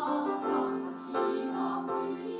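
A girls' high school choir singing held chords, moving to a new chord about a second in.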